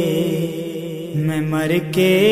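Sustained, chant-like humming drone of the naat's backing vocals, held on low steady notes that shift down in pitch about a second in. Near the end, a short rising sweep climbs in pitch.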